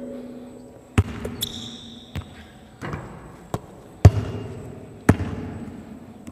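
Basketball bouncing on a hardwood gym floor: about six sharp thuds at uneven intervals, the loudest about four seconds in, with a brief high squeak about one and a half seconds in.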